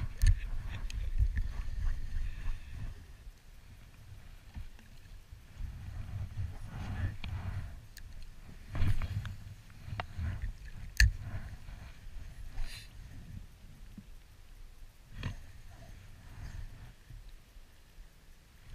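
Uneven low wind rumble on the microphone, with scattered clicks and knocks from a spinning rod and reel being handled and cast; the sharpest click comes about eleven seconds in.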